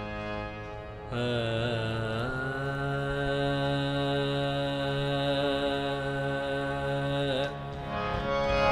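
A man's voice singing a long, wordless held note in a ghazal's opening alaap. It slides and wavers into the note about a second in, holds it steady and lets go near the end, over a sustained harmonium drone.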